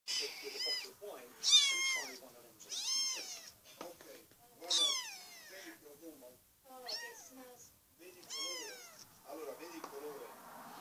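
A five-week-old kitten mewing over and over: about six high-pitched mews, each one falling in pitch.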